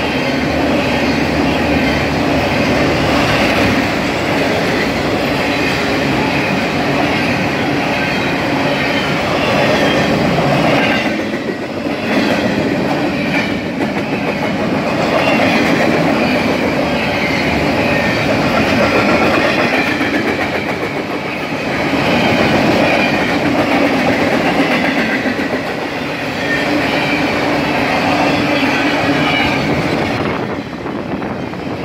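Freight train cars passing close by: a steady, loud rumble of steel wheels on rail that dips briefly a few times as empty double-stack well cars and then autoracks roll past.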